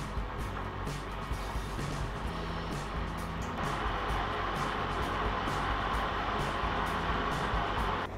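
Background music with a steady beat, getting fuller and a little louder about halfway through.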